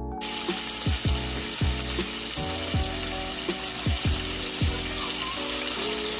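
Oil sizzling steadily in a frying pan as carrot strips and raisins fry, under background music with a steady beat.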